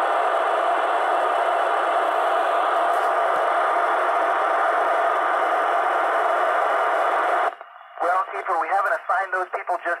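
Steady FM receiver hiss from a TYT TH-9800 VHF transceiver's speaker, squelch open on the 145.800 MHz space station downlink while the station is not transmitting. The hiss cuts off suddenly about seven and a half seconds in, and a man's voice comes over the radio.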